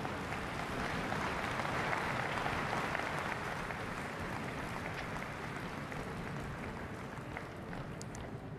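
A large audience applauding steadily, swelling a little in the first few seconds and then slowly dying down.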